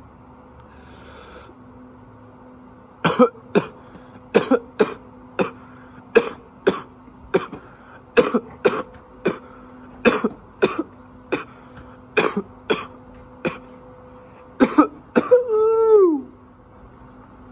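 A man coughing hard after a bong hit: a fit of about nineteen sharp coughs, roughly two a second, ending in a longer cough that falls in pitch.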